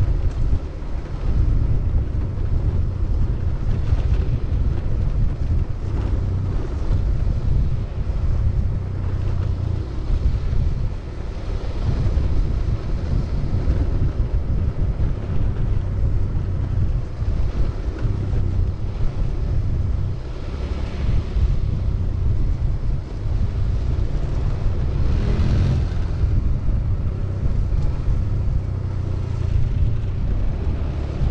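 Wind buffeting the microphone of a camera moving along at skating speed: a loud, steady, gusting low rumble with a fainter hiss over it.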